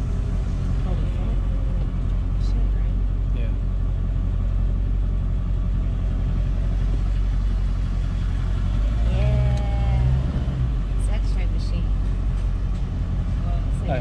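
Pickup truck's engine running steadily, heard as a low hum from inside the cab; the hum swells briefly about nine seconds in.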